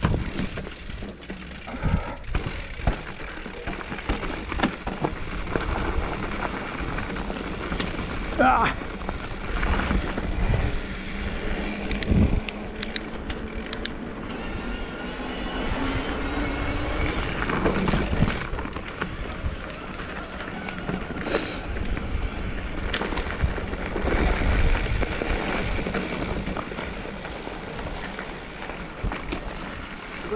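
Mountain bike being ridden: a steady low rumble of tyres and air on the bike-mounted microphone, with frequent short knocks and rattles from the bike over bumps. The tyres roll on tarmac and then onto a gravel dirt track near the end.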